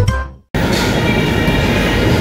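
The last notes of a short intro jingle ring out and stop before half a second in. Then a steady, fairly loud background din of a café starts, an even noise with faint steady tones in it.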